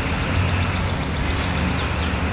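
A steady low motor-like hum under a wash of outdoor background noise.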